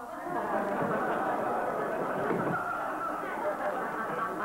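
Sitcom studio audience laughing in a long, steady wave at a punchline.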